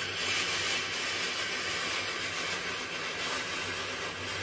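A Tefal Express Compact steam generator iron letting out one continuous, steady hiss of steam from its soleplate. It is being descaled with a 50-50 water and white vinegar mix, the steam blasting limescale out of the steam holes.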